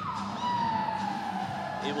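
A single whistle-like tone that rises quickly, then slides slowly downward for about a second and a half, like a siren winding down.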